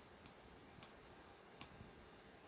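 Near-silent room tone with three faint ticks of an Apple Pencil's plastic tip tapping the iPad Pro's glass screen, the last one a little louder.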